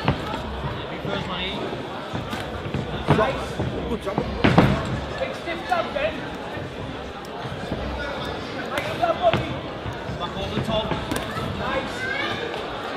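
Boxing gloves landing punches during a live bout: a run of sharp, irregular thuds, the loudest about four and a half seconds in, with shouts from the crowd and corners between them.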